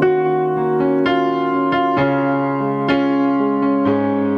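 Instrumental piano music: held chords with single melody notes struck over them every half second or so, with no singing.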